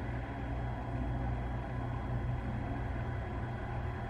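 Steady low hum with a faint hiss: room background noise, with no distinct sounds.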